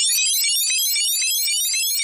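Moog Model 15 synthesizer playing its "Digital Fireworks" preset: a dense, rapid stream of short high-pitched electronic blips, each a quick little pitch sweep. In this stretch the lower notes have dropped out and only the high blips remain.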